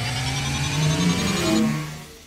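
Short electronic intro stinger for a segment title card: sustained synthesized tones slowly rising in pitch over a low note that steps upward, fading out near the end.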